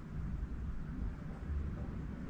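Low, steady rumble of the steel-wheeled locomotive chassis being rolled along its trolley.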